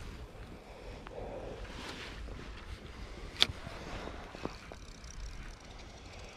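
Faint handling noise from a fishing rod and spinning reel as a lure is retrieved, with one sharp click about three and a half seconds in.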